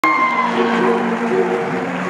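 Male a cappella group singing held chords through the hall's sound system, several voices sustaining notes together.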